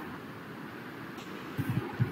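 A pause in speech filled with the steady background hiss of a video-call microphone. A few faint low sounds come near the end, as the voice is about to resume.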